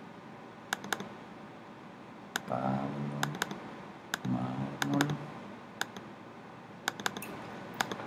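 Scattered single clicks of computer keys, a dozen or so spread over several seconds rather than continuous typing, with a voice speaking briefly twice near the middle.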